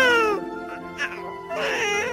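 Newborn baby starting to cry, a wail that swells near the end, over soft film-score music.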